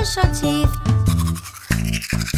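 Children's sing-along song with a bouncy backing track. About a second in, a cartoon toothbrush-scrubbing sound effect comes in over the music: rapid scratchy brushing.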